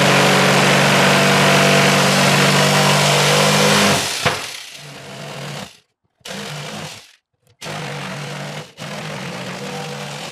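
Craftsman cordless jigsaw cutting through a cabinet's wooden back panel. The saw runs steady and loud for about four seconds, then cuts in short, quieter stop-start bursts.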